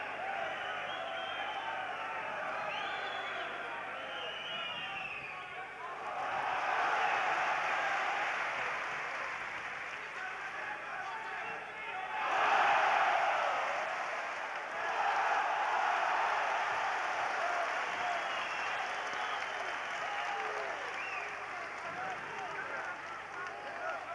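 Boxing arena crowd shouting and cheering throughout, swelling into loud cheering three times, about six, twelve and fifteen seconds in, the middle swell the loudest.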